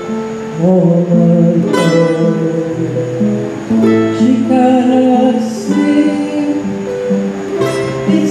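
Acoustic guitar strummed in a slow folk song, with a mandolin playing along; a fresh strum comes about two seconds in and again near the end.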